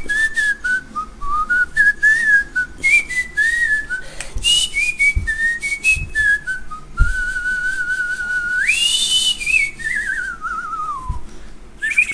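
A man whistling a tune: a run of short notes hopping up and down, then a long held note that jumps up for a moment, ending in a wavering slide downward. A few dull thumps sound under it.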